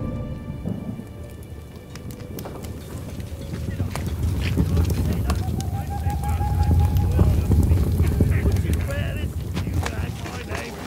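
Film soundtrack ambience of a night camp: a steady low rumble under scattered crackles of a campfire, with faint voices. A single held tone sounds for about two seconds in the middle.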